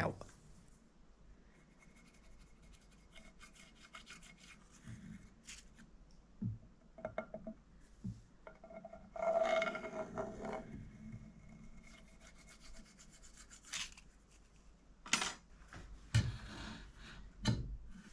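Hands rubbing and sliding along two planed wooden boards stacked face to face, with a few short knocks of wood as the boards are handled, mostly near the end.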